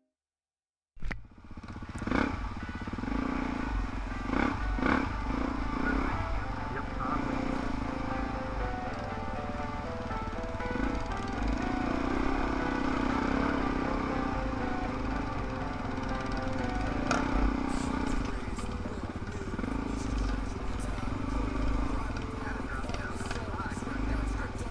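Four-stroke single-cylinder dirt bike engine heard from the rider's helmet, starting about a second in, the throttle opening and closing every couple of seconds on a slow trail ride, with scattered knocks from the bike jolting over rough ground.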